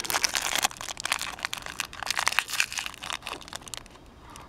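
Pink metallic foil wrapper crinkling as hands unwrap it, a dense run of crisp, irregular rustles and crackles.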